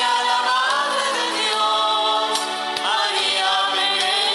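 Choir singing the closing hymn at the end of a Catholic Mass.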